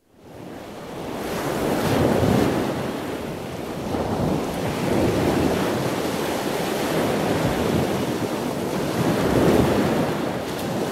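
Ocean surf washing in: a steady rush of breaking waves that fades in at the start, then rises and falls in slow swells.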